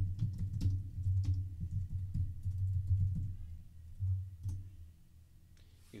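Typing on a computer keyboard: a quick run of keystroke clicks, tailing off about four and a half seconds in.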